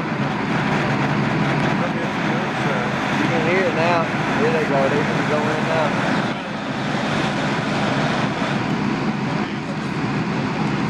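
Fire engine running steadily, a constant engine hum under broad noise. People's voices call out in the middle.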